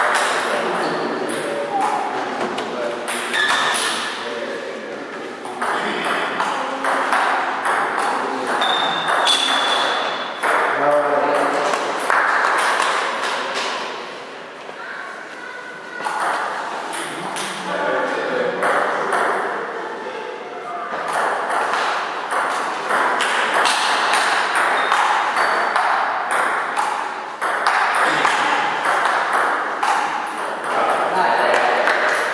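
Table tennis rallies: quick, sharp clicks of the celluloid ball struck by rubber paddles and bouncing on the table, back and forth in runs. There is a short lull partway through, between points.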